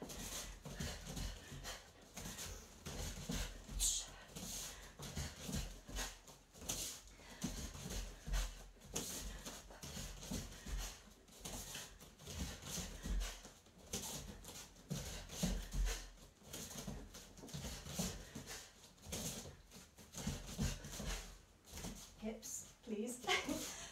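Hard rhythmic breathing with short, sharp exhales, mixed with soft thuds of bare feet shifting on foam floor mats, repeating about once or twice a second during shadowboxing combinations.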